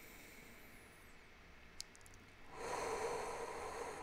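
A man's deep audible breath, an airy rush of about a second and a half near the end, taken as part of a guided deep-breathing exercise. Before it there is low room tone with one faint click.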